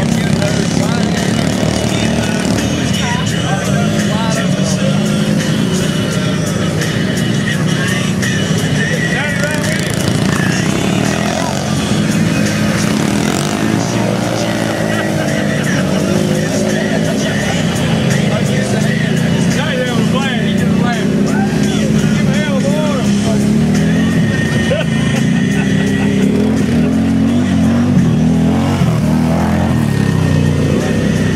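Can-Am Commander 1000 side-by-side's engine running steadily under load as it churns through deep mud, with voices over it.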